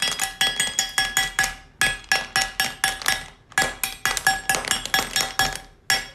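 A hard-candy cutting machine chopping a rod of candy into slices: rapid sharp clinks, about five a second, each with a brief ring. They come in runs of a second or two, with short pauses between.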